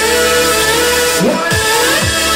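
Loud hardcore rave dance music played through a club sound system from a live DJ set: sustained synth chords and a melody line over a deep bass. The kick drum drops out for the first part and comes back in about a second and a half in.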